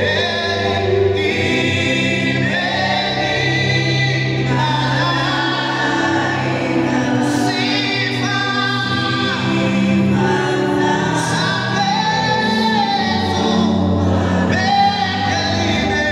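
A Swahili gospel hymn sung live by a male lead singer on a microphone, with a group of backing singers, in continuous sustained sung phrases.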